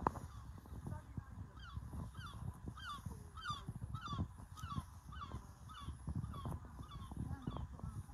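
A bird calling over and over in short honks, about two or three a second, starting a second or so in, over a low rumbling noise.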